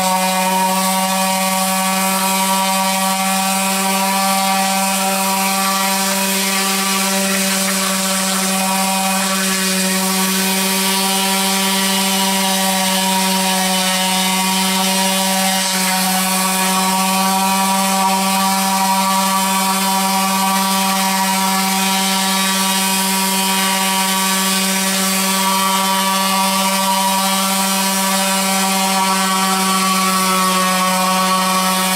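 Random orbital sander running steadily, its pad sanding across the cast-iron table of a Bridgeport milling machine to knock down the high spots. A constant low hum with a stack of overtones, unbroken throughout.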